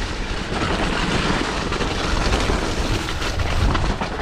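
Mountain bike riding fast down a dirt singletrack strewn with fallen leaves: a steady rumble of tyres on the ground with the bike rattling over the bumps.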